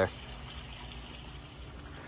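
Steady, low outdoor background noise: an even faint hiss with no distinct events.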